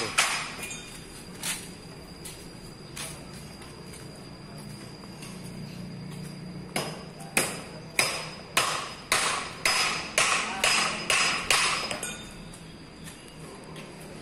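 Hammer blows on steel at a bus's front wheel hub, with the wheel and brake drum off. A few scattered strikes come first, then a run of about ten blows, a little under two a second, with a faint metallic ring.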